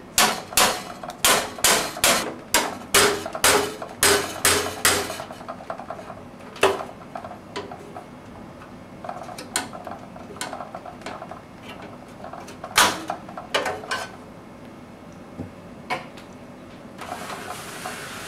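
Screwdriver banging on the thin sheet-metal I/O shield at the back of a steel PC case to knock it out. A quick run of sharp metal knocks, about two a second for the first five seconds, is followed by scattered single knocks.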